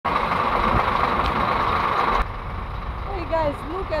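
Low engine rumble from vehicles idling in stalled traffic, under a loud rushing hiss that cuts off suddenly about two seconds in. A woman starts talking near the end.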